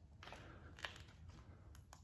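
Near silence: quiet room tone with a few faint clicks, the sharpest one about midway.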